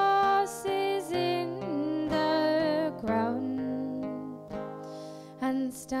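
A woman singing a slow folk ballad in long held notes, accompanied by acoustic guitar.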